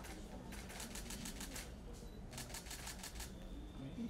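Camera shutters firing in two rapid bursts of quick clicks, each lasting about a second, with a low murmur of voices beneath.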